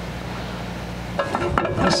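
Light metallic clinks and rattles of aluminum column cap pieces being handled. A steady low hum underneath stops about a second in.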